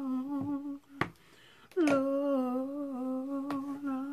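A woman humming a tune with her mouth closed in long, steady held notes: a short note, a sharp click about a second in, then a long held note.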